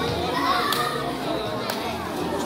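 Many children's voices at once in a large room, with a couple of short sharp sounds about a second apart.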